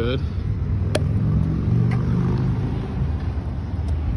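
Steady low rumble of city traffic and wind on an open rooftop, with a single sharp click about a second in.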